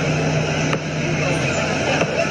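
Busy fairground midway ambience: a crowd's chatter over a steady low machine hum.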